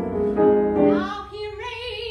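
Soprano singing with grand piano accompaniment. About a second in, her voice rises to a higher note sung with vibrato.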